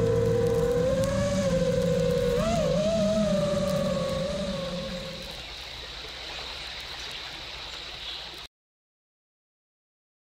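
An FPV quadcopter's brushless motors whining, the pitch rising and dipping with throttle changes, fading out about five seconds in. A quieter hiss follows, then the sound cuts off abruptly near the end.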